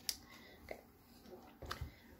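Quiet room with a few faint, short clicks and taps from handling a makeup brush while it is cleaned off, and a soft murmured 'okay'.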